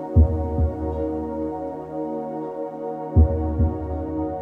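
Soft ambient new-age music of sustained tones. A deep double thump, like a heartbeat, sounds twice, about three seconds apart.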